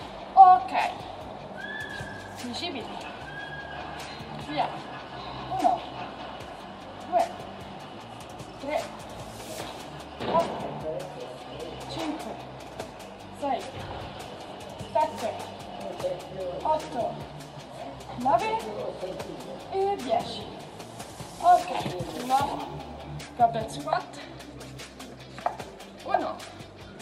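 Background music with a steady beat under short, pitched vocal sounds about once a second, the effort breaths of a woman doing dumbbell squat-and-press reps, with a few light clicks among them.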